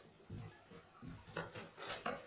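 Bed sheet rustling and rubbing against the mattress as it is tucked in by hand: a few short scraping strokes, the loudest a rasping swipe near the end.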